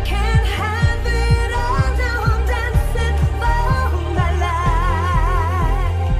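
Nu Italo disco song: a four-on-the-floor kick drum about twice a second under a pulsing synth bass, with a singing voice that holds a long note with vibrato in the second half.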